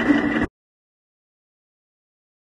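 Hydraulic pipe bender's pump running with a steady hum for about half a second, then the sound cuts off abruptly into complete silence.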